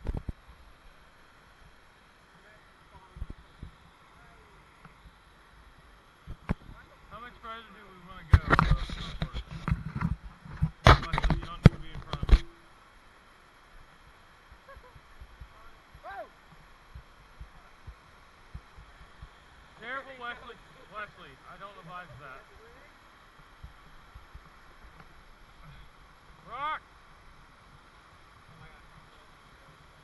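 Short calls from voices at a distance over the faint steady rush of a rocky creek, with about four seconds of loud rustling and crunching starting about eight seconds in.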